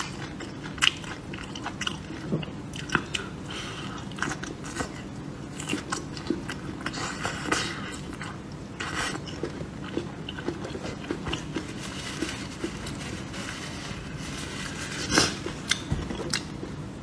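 Close-miked chewing and biting of a soft green chili pepper: a steady run of wet smacks and small crunches. Near the end there is one louder knock.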